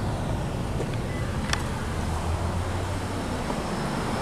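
Steady low rumble of a car engine and road traffic, with a faint click about a second and a half in.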